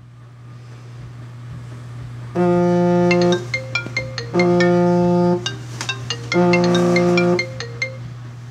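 iPhone alarm tone going off: a one-second chord sounds three times, about two seconds apart, with short high pings between, over a steady low hum that swells over the first two seconds.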